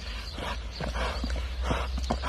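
Hoofbeats of a ridden Arabian horse doing its prancing dance gait on a sandy dirt track: uneven, dull strikes several times a second, over a steady low rumble.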